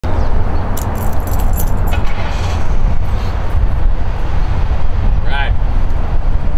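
Heavy low outdoor street rumble on the microphone, with metal leash hardware jingling from about one to two seconds in, and a brief voice about five seconds in.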